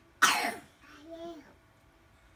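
A single loud cough about a quarter second in, followed by a brief voiced sound, as from a small child.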